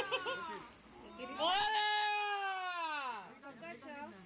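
Brief voices, then a person's single long, loud call held for about two seconds that slides down in pitch at the end.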